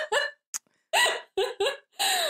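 Laughter in short voiced bursts that break off for about half a second, then come back in a few more bursts.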